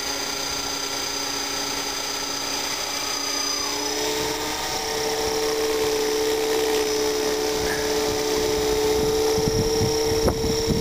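Align T-Rex 500 electric RC helicopter spooling up and lifting off: a high electric-motor whine over the steady hum of the spinning rotor, shifting in pitch about four seconds in and growing louder. Near the end rotor wash buffets the microphone.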